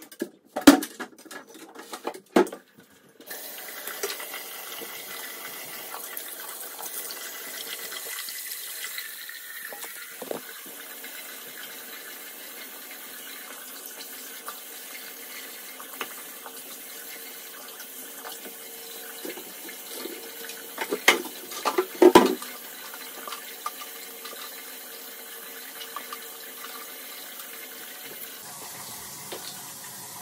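A bathroom faucet runs steadily into a sink, starting about three seconds in, while the basin is cleaned. A few sharp knocks of objects being handled come at the start, and a louder cluster of knocks comes about two thirds of the way through.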